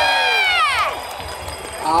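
Arena announcer's voice over the public-address system, holding out the end of a rider's name in one long call that falls in pitch and stops about a second in. A short lull of hall noise follows before he speaks again near the end.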